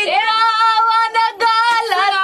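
A high female singing voice holds one long wavering note for over a second, breaks off briefly, then begins another note.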